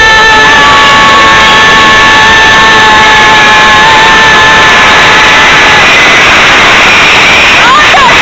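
Onboard a mine-train roller coaster: a loud, constant rush of ride noise with a steady high-pitched squeal lasting about six seconds, then a short rising and falling cry near the end.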